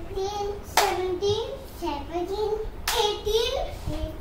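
A young child's high voice in a sing-song chant of long, gliding notes, with a sharp hand clap about a second in and another near the three-second mark.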